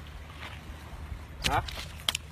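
A low, steady background rumble, with a short voice call about one and a half seconds in, falling in pitch.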